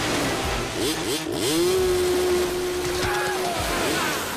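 Several dirt-bike engines revving. About a second in there is a quick run of rising revs, then one engine holds a steady high rev for about two seconds before dropping off.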